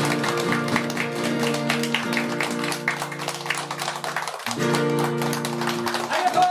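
A nylon-string classical guitar and a steel-string acoustic guitar strumming the closing chords of a song, with a brief break and a new chord about four and a half seconds in, the last chord ending at the close.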